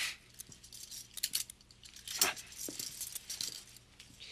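Steel handcuffs clinking and clicking, a run of short irregular metallic clicks from the chain and cuffs as the cuffed hands move.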